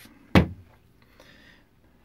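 Hard plastic vacuum-cleaner front flap set down on a tabletop: a single sharp knock about a third of a second in.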